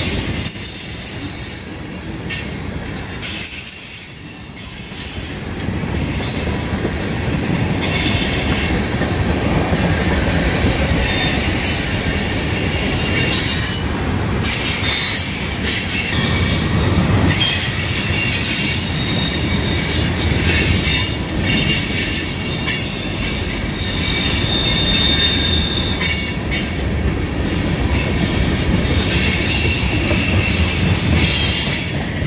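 Freight train of tank cars and open hoppers rolling past close by: a continuous rumble and clatter of steel wheels on the rails. The sound is briefly quieter a few seconds in, and a thin high wheel squeal rings out about 25 seconds in.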